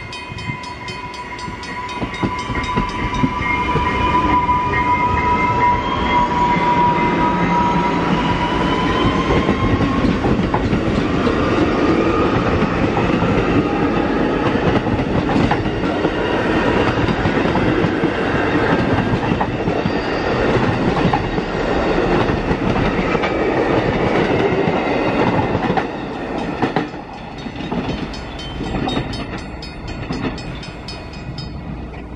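Electric commuter train passing close by. A high electric whine, typical of its traction motors, rises in pitch as the train gathers speed. The rumble and clatter of its wheels on the rails carries on for about twenty seconds and drops off near the end.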